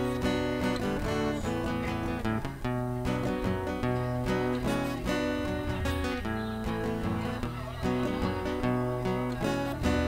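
Solo acoustic guitar strumming chords in a steady rhythm, an instrumental passage with no singing.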